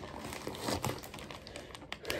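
Plastic wrapping of a rolled memory foam pillow crinkling and rustling irregularly as the pillow is handled and turned over.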